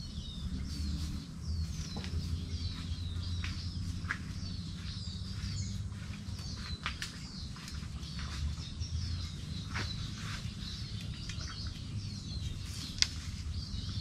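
Small birds calling over and over with short, high, falling chirps, over a low steady rumble, with a few scattered light clicks.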